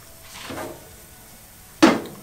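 A metal basting dome is set down on the steel griddle with a single sharp clank and a short ring near the end.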